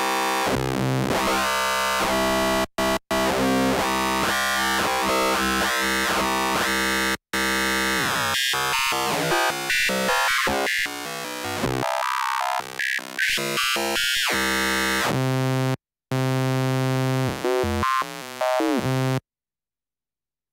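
Phase Plant software synthesizer lead playing a note pattern, its gritty, phase-modulated tone sweeping as the modulation from a second oscillator two octaves down is mixed in by a macro. Curving sweeps give way to short separated notes and then steadier held notes, and it cuts off suddenly about a second before the end.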